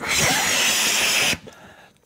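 A person blowing up a rubber balloon by mouth: one long rush of breath forced into the balloon, lasting about a second and a half, then stopping as he pauses to breathe in.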